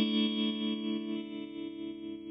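Clean electric guitar chord from a Fender Telecaster played through a Roland Micro Cube GX on its Black Panel amp model with tremolo, struck at the start and left ringing as it slowly fades.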